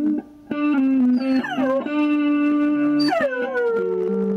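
A dog howling along to an electric guitar playing sustained notes. There are two falling howls, one about a second and a half in and another about three seconds in, and the guitar drops out briefly near the start.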